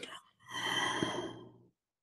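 A person sighing: one breathy exhale lasting about a second, just after the end of a spoken phrase.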